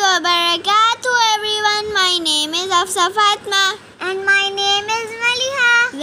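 A child singing a melody in a high voice, with long held notes that bend in pitch and short breaks between phrases.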